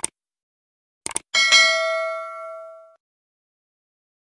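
Subscribe-button animation sound effect: a short click at the start and a quick double click about a second in, then a bright bell ding that rings and fades out over about a second and a half.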